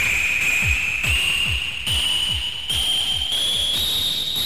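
Hardstyle track: a steady four-on-the-floor kick drum, about two and a half kicks a second, each kick with a short downward pitch drop, under a high synth tone that rises slowly and steadily as a build-up.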